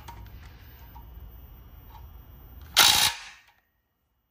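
Cordless impact wrench hammering a nut tight in one short burst of about half a second near the end, on the timing end of a Toyota 2ZR-FXE engine, with the sprocket braced by a large socket so the impact does not break it.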